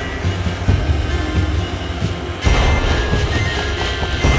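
Handheld gas torch flame blowing with a steady rushing noise as it heats a brass pendant, under background music; the rush grows louder and brighter about two and a half seconds in.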